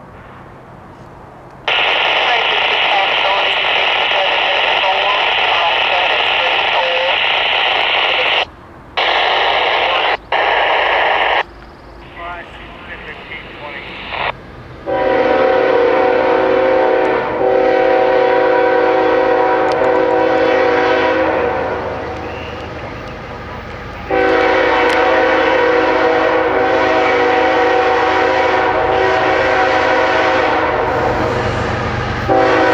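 A scanner radio hissing with static for several seconds, cutting out a few times. Then the horn of the leading CSX GE ES44AC-H locomotive sounds a long blast, fades, and a second long blast starts about 24 seconds in as the train approaches.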